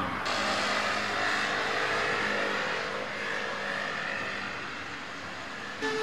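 A passing vehicle: a steady running noise with a few held tones that slowly fades over the last few seconds.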